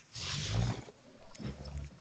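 A person's breathy, drawn-out vocal sound through a video-call microphone, heard twice, the first louder.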